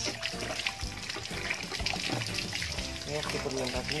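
Water running from a hose pipe into a plastic jerrycan, a steady trickling hiss, under background music with a singing voice.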